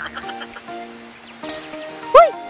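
Background music with steady held notes, with a short burst of noise about one and a half seconds in.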